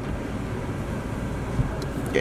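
Steady low rumble of a Suzuki Dzire sedan's running engine heard from inside its cabin, with a light knock about one and a half seconds in.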